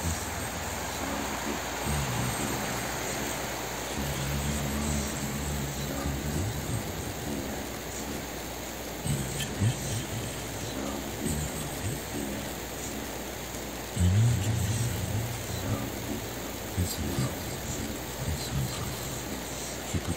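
Low wordless human humming in several drawn-out phrases, the strongest starting about fourteen seconds in, over a steady hiss and soft background music.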